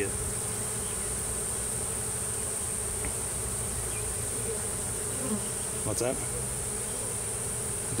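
Honeybee swarm buzzing with a steady low hum at close range as the bees crawl up a wooden ramp into a hive. A steady high-pitched tone runs above the hum.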